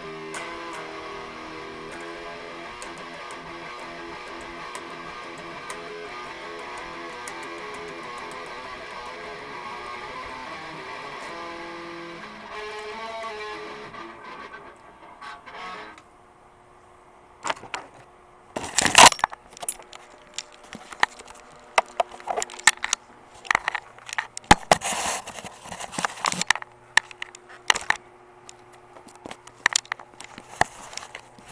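Electric guitar being played, single notes and chords, which stops a little before halfway. Then a series of loud, irregular knocks and clatters.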